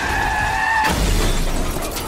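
Film car-crash sound effects: tyres squealing with a steady high whine. About a second in comes a sudden collision with a deep impact and car window glass shattering.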